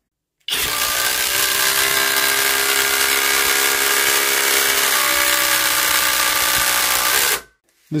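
Flex 24V cordless impact driver, on a 2.5Ah battery, driving a long screw into a wood beam. It runs continuously for about seven seconds at a steady pitch and stops suddenly.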